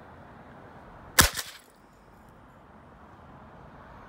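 A thrown box hits the ground once about a second in, a sharp loud impact with a brief rattle after it.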